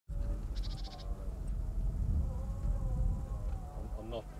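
Livestock bleating with a wavering pitch over a steady low rumble, with a short rapid high trill about half a second in.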